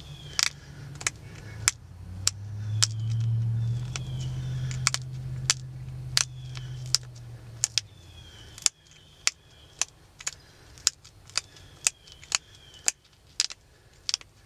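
Pressure flaking a stone arrowhead: sharp little clicks about two a second as flakes snap off its edges, knocking them down to narrow it into a gun flint. A low hum runs from about two to eight seconds in.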